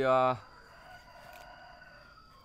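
A rooster crowing faintly, one long call of nearly two seconds.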